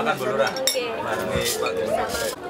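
Metal spoons clinking and scraping against plates as food is served out, with a couple of sharp clinks, over people talking.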